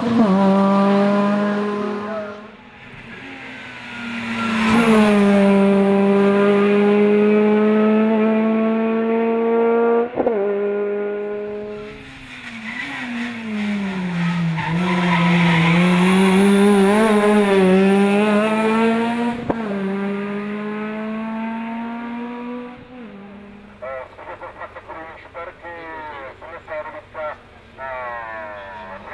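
Hatchback race car's engine held at high revs as it climbs a hill-climb course. Its pitch drops and climbs again through a bend midway, with brief sharp cracks about ten and nineteen seconds in. It fades near the end, when a voice is heard.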